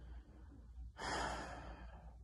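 One audible breath from a man close to the microphone, a sigh-like rush of air about a second in that lasts under a second, over a faint steady low hum.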